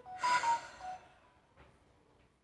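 A woman's short, breathy exhale through the nose, like a snort, lasting under a second near the start.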